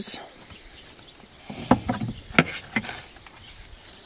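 A few short light knocks and clicks, bunched together about halfway through, from a hand dustpan brush being picked up and handled.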